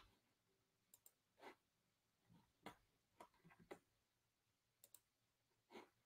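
Near silence broken by faint, irregular clicks, about seven in all, from a laptop being operated by hand.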